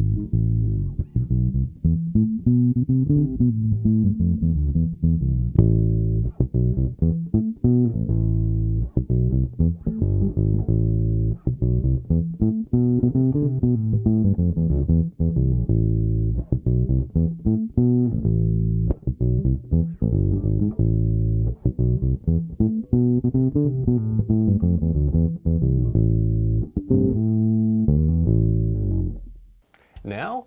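Passive P-bass played fingerstyle with its tone knob rolled fully off, a dark, repeating bass line: first the D. Lakin 5730 short-scale Precision bass, then the Music Man Cutlass. The playing stops just before the end.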